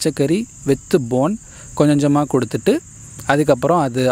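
Crickets chirring in a steady high continuous band, under a man talking.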